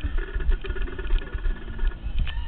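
Wind buffeting and handling rumble on a camera mounted on a trumpet that is carried across the field, with faint steady tones behind it.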